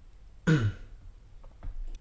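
Someone clearing their throat once, a short vocal sound that drops in pitch.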